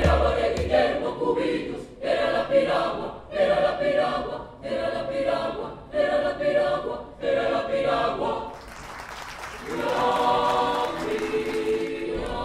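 Mixed choir of men's and women's voices singing under a conductor, in short phrases about a second apart, then holding longer notes over the last two seconds.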